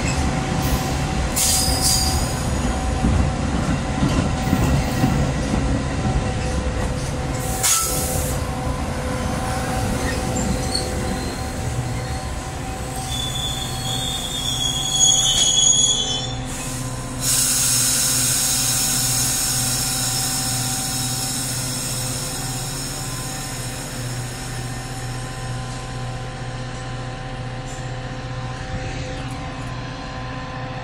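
Metra bi-level diesel commuter train rumbling along the platform and braking to a stop, with a high brake squeal about halfway through. Right after, a sudden hiss of air breaks out and fades while the locomotive's engine hums steadily.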